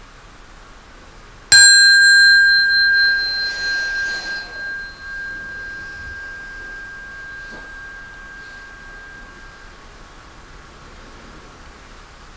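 A meditation bell struck once, giving two clear ringing tones that fade slowly over about eight seconds. It marks the end of a guided sitting period.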